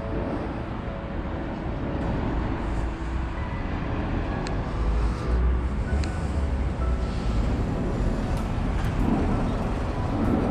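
Steady low rumble of road traffic, a continuous noise without distinct events that gets a little louder after about two seconds.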